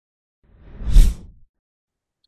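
A whoosh sound effect from a logo intro animation, swelling in and fading out over about a second, with a deep low hit at its peak about a second in.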